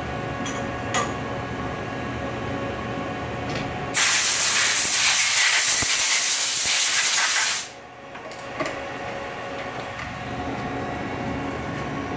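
Compressed air hissing loudly for about three and a half seconds, starting about four seconds in and cutting off sharply, over a steady machine-shop hum; a few light clicks come before it.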